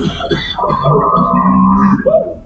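Baleen whale song recording played over loudspeakers: a long, steady low note with a stack of overtones, the layered harmonics of the song. There is a brief burst of a man's voice at the start.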